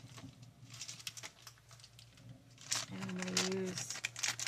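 Thin plastic packaging crinkling as a bag of fine foam strips is handled, in scattered rustles that start about a second in. There is a short hummed voice sound near the end.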